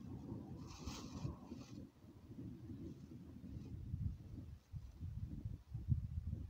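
Brief crinkling rustle of a clear plastic roasting bag being handled about a second in, with fainter rustles later, over an uneven low rumble of wind on the microphone.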